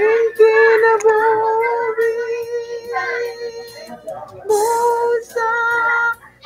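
A woman singing a slow Visayan song solo, holding long notes with short breaths between phrases.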